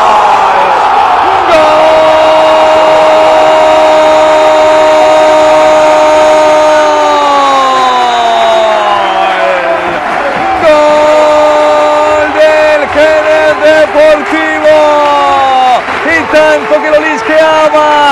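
Spanish football commentator's goal call: a high, drawn-out shout of "gol" held for about five seconds, its pitch sliding down as the breath runs out, followed from about ten seconds in by a quick string of short shouted syllables.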